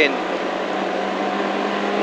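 Peugeot 205 GTi 1.9's four-cylinder engine pulling at steady revs, with road noise, heard from inside the cabin.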